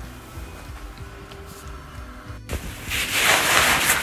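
Soft background music, then after a sudden break about two and a half seconds in, loud rustling of a jacket's fabric rubbing against the phone's microphone.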